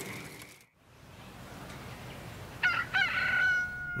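Rooster crowing, starting about two and a half seconds in: two short rising notes, then one long held note.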